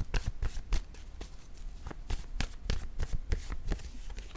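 A worn deck of tarot-style cards being shuffled by hand: a steady run of quick, irregular card flicks and slaps.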